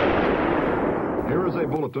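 Long echoing rumble of a single loud gunshot dying away slowly. A man's newsreader voice comes in over the tail near the end.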